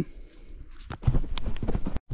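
A quick, irregular run of short knocks and clicks that starts about halfway through.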